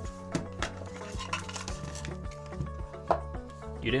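Hard plastic deck boxes being opened and handled: a scatter of light clicks and knocks, with one sharper knock about three seconds in, over soft background music.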